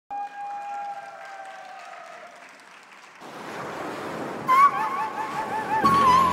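Audience applause that swells about three seconds in. About a second and a half later an instrumental song intro comes in with a wavering, vibrato melody line over the clapping.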